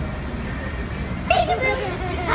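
Steady low rumble of outdoor background noise, with a person's voice starting to speak about two-thirds of the way in.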